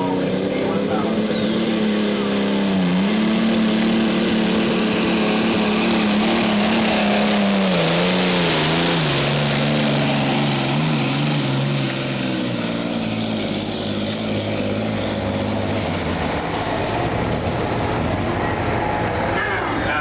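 Gas-powered pro stock pulling tractor engine running at high revs under load while pulling a sled. The engine note holds high with brief wavers for about eight seconds, then falls in steps and runs lower from about twelve seconds in.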